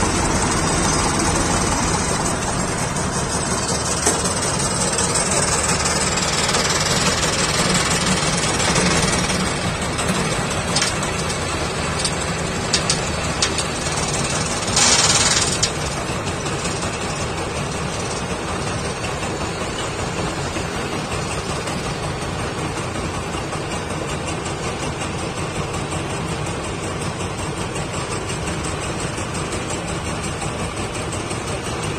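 Diesel tractor engine running steadily close by, together with a combine harvester's engine and machinery working. A few sharp clicks come a little before halfway, then a loud rushing burst lasting about a second, after which the running noise is a little quieter.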